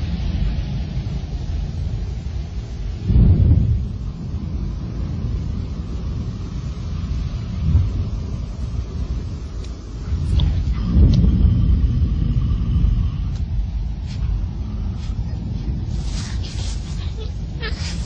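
Low wind rumble on the microphone, gusting louder about three seconds in and again around eleven seconds, with brief rustles near the end.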